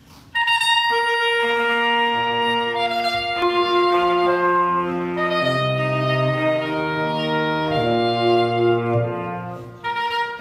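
Saxophone quartet playing a fanfare live, the four players spread far apart around a theatre auditorium. The parts enter one after another from the highest to the lowest on held notes, building sustained chords that shift together, with a brief dip just before the end.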